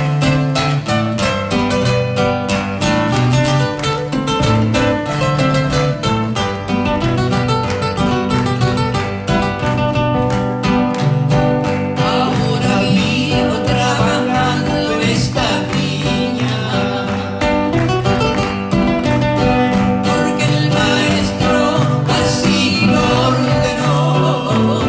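Two acoustic guitars playing a strummed and picked instrumental introduction to a Spanish-language hymn; about halfway through, a man and a woman begin singing it together as a duet over the guitars.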